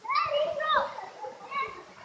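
A child's high-pitched voice calling out in short cries with no clear words, a longer one at the start and a shorter one about a second and a half in.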